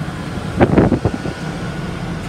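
Steady running of the bus's air-conditioning blowers, blowing on high, with a low hum under it. About half a second in, a brief louder rush of noise lasting about half a second.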